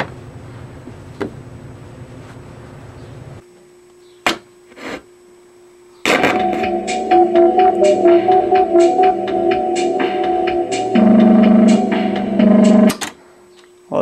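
Reel-to-reel tape deck playing back a just-recorded synthesizer theme tune, which comes in abruptly about six seconds in and cuts off near the end; the playback comes out wrong, a sign the recording did not work properly. Before the music, a low hum and a few sharp clicks.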